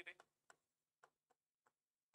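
Faint, scattered clicks of a pen tip touching a writing board as a word is written, a few light taps spread over the two seconds.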